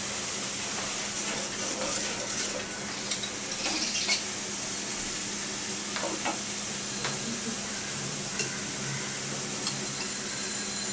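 Curry masala paste sizzling steadily in oil in a metal karahi, with a few short scrapes and taps of a metal spatula against the pan.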